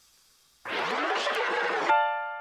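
A loud rushing burst of noise lasting just over a second, in the gap between songs of a rap mashup, cut off near the end by a sustained electric piano chord.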